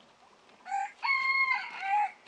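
A rooster crowing once, starting under a second in: a short opening note, then a long, level held note that dips and ends.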